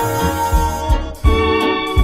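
Big-band swing music: sustained chords over a steady low beat, with a brief dip and a new chord coming in just after a second in.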